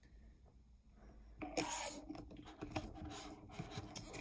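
Blanket fabric rubbing and rustling close against the microphone in uneven scrapes, starting about a second and a half in.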